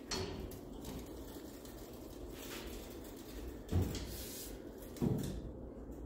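The steel convertible top rack of a 1959–60 Chevrolet Impala being moved by hand, its riveted pivots working freely. There are two soft knocks about a second apart in the second half.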